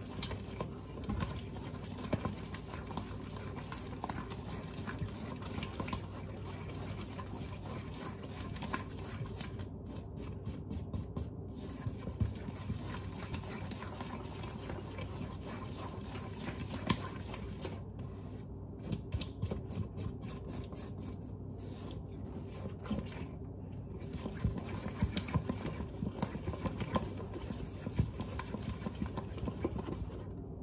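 A utensil stirring and scraping wet cookie batter of creamed butter, sugar and egg by hand in a stainless steel mixing bowl, with small irregular ticks against the metal.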